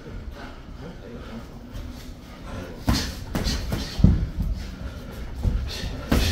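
Boxing gloves landing in sparring: a handful of sharp punch impacts in the second half, the loudest about four seconds in.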